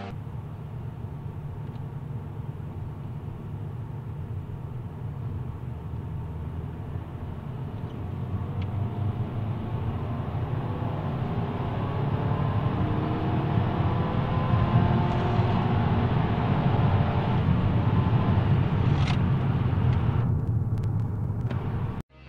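Car engine and road noise heard from inside the cabin. A steady low drone grows louder from about eight seconds in as the car accelerates hard, with the engine pitch climbing, then it eases off near the end.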